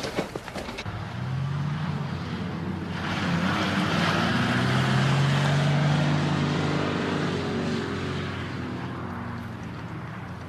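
A couple of sharp knocks in the first second, then a car engine and tyre noise building up, loudest about halfway, then slowly fading as the car drives by.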